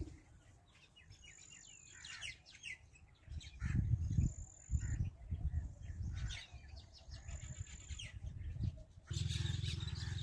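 Small birds chirping and calling repeatedly, with short low rumbles in the middle. About nine seconds in, a steady low hum comes in under the birdsong.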